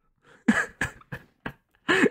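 A man's stifled laughter: about four short, breathy bursts of laughing through the nose and mouth, with brief pauses between them.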